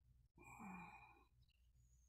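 A man's faint sigh lasting under a second, in an otherwise near-silent pause.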